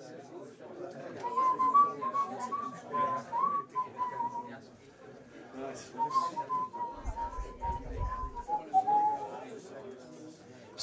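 A person whistling a wavering tune in two phrases, over low room chatter, with some deep bumps partway through the second phrase.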